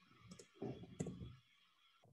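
A few faint computer keyboard keystrokes, with sharp clicks about a third of a second and about a second in, as a character is deleted and a caret typed with shift and six.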